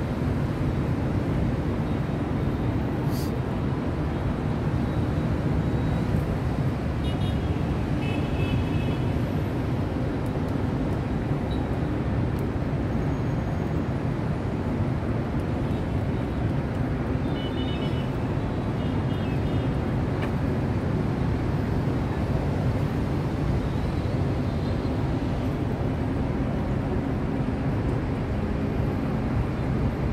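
Steady drone of city street traffic, cars and motorbikes blending into one continuous rumble heard from high above the street.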